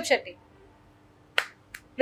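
The tail of a spoken word, then a single sharp click about one and a half seconds in, followed by a fainter click.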